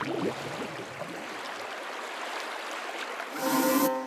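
Logo-sting music and sound effect: a steady rushing whoosh, then a bright ringing chord with a high shimmer about three and a half seconds in, the loudest moment, which then fades away.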